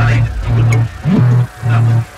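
Aggressive drift phonk music: heavy distorted bass notes pulsing about twice a second, with a vocal sample over the beat.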